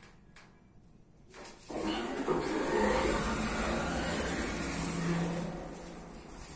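Otis elevator's doors sliding open at the landing, with a loud, even rushing noise and low rumble that starts about a second and a half in, lasts about four seconds and then fades.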